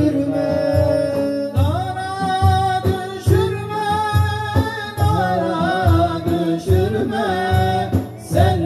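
Male voices singing a Turkish ilahi (religious hymn) through microphones in long, drawn-out notes that slide up and down in pitch, over a steady low beat on a frame drum.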